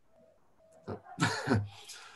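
A person says "oh" and then lets out a short, breathy vocal burst about a second in, a reaction to a joke.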